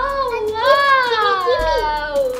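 A child's single drawn-out vocal cry, its pitch wavering and then sliding down toward the end.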